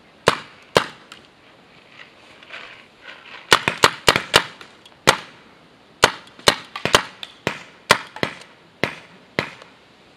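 Paintball markers firing in short sharp pops: two shots early on, then a fast, irregular string of about twenty shots from about three and a half seconds in, during an exchange of fire.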